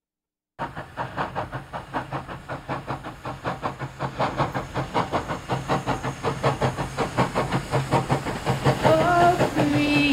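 Steam train sound: a locomotive chuffing in a steady rhythm of about four to five beats a second, growing louder, starting suddenly about half a second in. A pitched, whistle-like tone comes in near the end.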